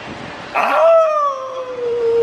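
A person howling like a wolf: one long howl starting sharply about half a second in, held and sliding slowly down in pitch.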